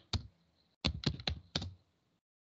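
Typing on a computer keyboard: a single keystroke, then a quick run of about five keystrokes starting a little under a second in.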